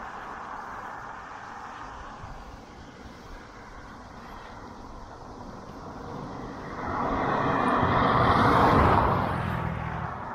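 A car passes, its engine and tyre noise swelling to a loud peak for about three seconds in the second half, then fading near the end. Under it, steady rushing wind and road noise from the moving bicycle.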